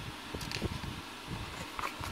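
Quiet steady room hum with a few soft paper rustles as a picture-book page is handled and turned by hand.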